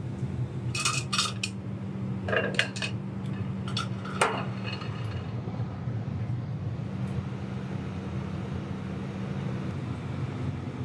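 Steel ladle and tools clinking against metal at an aluminium melting furnace, about nine sharp, ringing clinks in the first half, the sharpest just past four seconds in, over a steady low hum.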